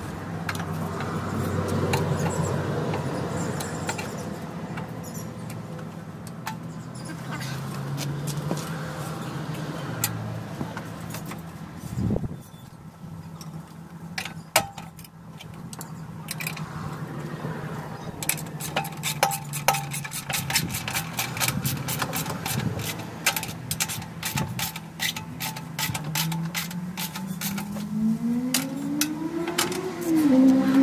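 Metal tools and mower parts clicking and clinking as work goes on under a ride-on mower's transaxle, the clicks coming thick and fast in the second half. Underneath runs a steady low mechanical drone, which rises in pitch over the last few seconds.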